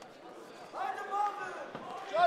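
Men's voices shouting in a large hall, starting about three quarters of a second in, with a dull thump near the end.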